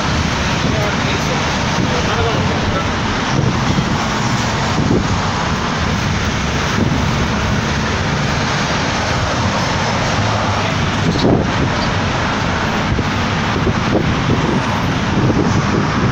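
Steady, loud traffic noise on a busy city road: the low rumble of a moving vehicle with the sound of the surrounding cars and motorcycles.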